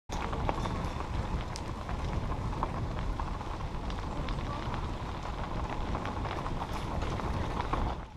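Bicycle ridden over a gravel path, heard from a camera mounted on the bike: tyres crunching on gravel and the bike rattling with many small knocks, over a steady low rumble of wind on the microphone.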